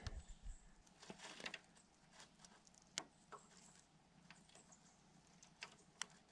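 Mostly near silence with faint, scattered small metallic clicks of a bicycle chain and a Wippermann Connex quick link being handled as the link halves are fitted into the chain, with one sharper click about three seconds in.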